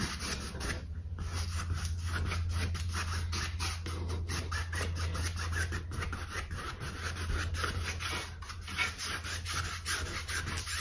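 Paintbrush bristles rubbing acrylic paint across a canvas in a quick run of short back-and-forth scratchy strokes, over a steady low hum.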